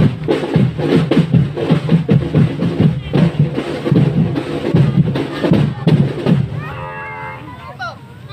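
Marching drum band playing a steady, rapid beat on bass and snare drums, which stops about six and a half seconds in. A single held tone follows for about a second near the end.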